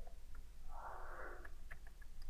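Faint computer keyboard clicks as a word is typed, with a short breath through the nose at the microphone lasting most of a second, near the middle.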